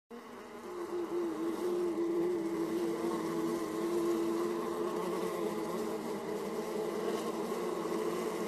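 Steady buzz of a flying insect, bee- or fly-like, fading in over the first second and holding one slightly wavering pitch throughout.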